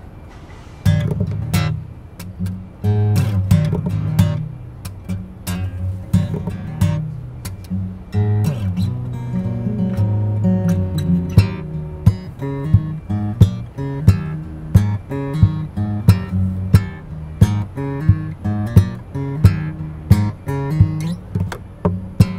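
Solo acoustic guitar played with the fingers, an instrumental intro that starts about a second in. From about halfway, sharp accented hits land on a steady beat, about three every two seconds.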